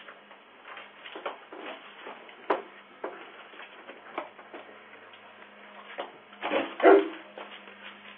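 A dog giving short, irregular barks and whimpers, loudest about a second before the end, with a sharp click about two and a half seconds in. Heard thin and muffled through a doorbell camera's microphone.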